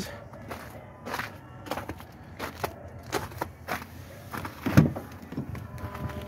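Footsteps crunching on icy snow with phone-handling noise, and a louder thump near the end as the pickup truck's door is opened.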